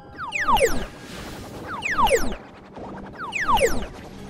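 An electronic sound effect of a tone sweeping steeply downward in pitch, played three times about a second and a half apart. Each sweep ends with a low thud.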